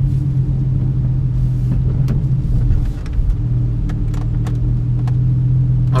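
Porsche 911 (991 Carrera) flat-six engine and road noise heard from inside the cabin while driving, a steady low drone that dips briefly about halfway through.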